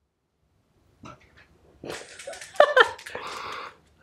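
An excited pet dog with the zoomies making short whining noises. A short pitched call comes about two and a half seconds in, followed by a breathy grumble, after a quiet first second.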